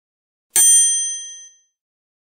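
A single bright, bell-like ding sound effect, struck once about half a second in and ringing out to fade within about a second.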